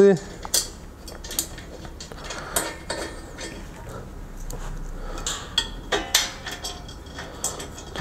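Irregular metal clinks and light knocks as the cast-iron funnel cover of a ProMetal Atmosfera sauna stove is seated over its stone chamber and nuts are started by hand on its mounting bolts.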